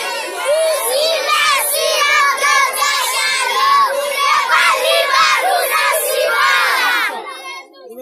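A large crowd of schoolchildren shouting together, their many voices overlapping, dying down near the end.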